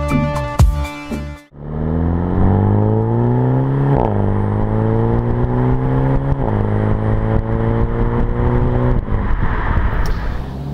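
Mini John Cooper Works' 2.0-litre turbocharged four-cylinder accelerating hard: the revs climb, drop sharply at two upshifts about four and six and a half seconds in, climb again, then ease off near the end. Electronic intro music plays for the first second and a half.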